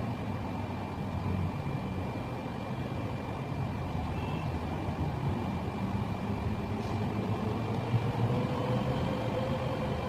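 Steady low mechanical rumble with a faint, constant high-pitched whine above it; a second, lower tone rises slowly in the last few seconds.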